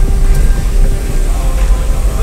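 Steady low rumble heard from inside a car's cabin as it drives slowly over a rough, wet road surface: engine and tyre noise.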